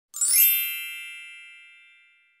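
Chime sound effect: one bright, bell-like shimmer of many ringing tones, with a quick glitter of high notes as it strikes about a quarter second in, then fading away slowly.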